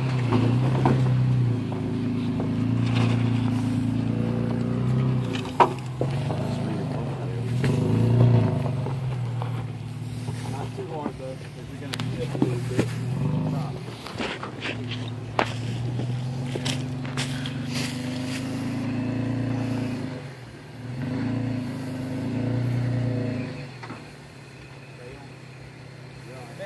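Toyota FJ Cruiser's 4.0-litre V6 engine pulling at low speed up a rocky hill climb, its note rising and easing in swells every few seconds as the driver feeds throttle over the ledges. Sharp knocks and scrapes from the tyres and body on rock come through at times.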